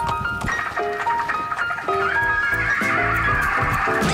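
Light background music with stepped plucked notes. Over the second half, a horse whinnies in one long quavering call.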